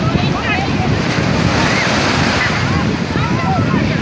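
Small sea waves breaking and washing over the shallows, a steady rushing surf, with wind buffeting the microphone. Distant voices and shouts of bathers rise over it now and then.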